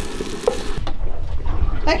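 Coral trout fillets sizzling in a frying pan, with metal tongs clicking against the pan twice as the fillets are lifted out. The sizzling stops about a second in.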